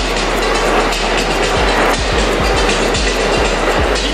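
Loud, steady noise of a subway train in the station, with irregular low knocks through it.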